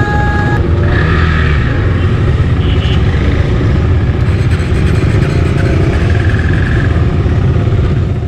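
A large pack of KTM motorcycles running together as the group rolls off at low speed, a loud continuous engine rumble.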